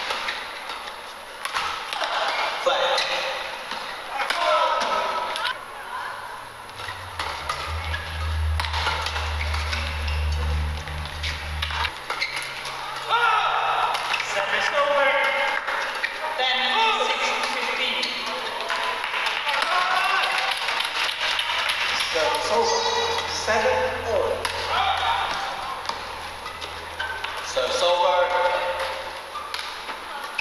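Badminton doubles rallies: repeated sharp racket hits on the shuttlecock and shoes squeaking on the court, with voices in the hall. A low hum comes in for a few seconds about seven seconds in and again later.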